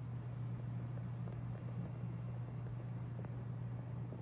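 Room tone: a steady low hum with a faint even hiss over it, and no distinct sound events.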